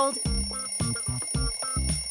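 Alarm clock ringing in short repeated tones over background music with a steady beat.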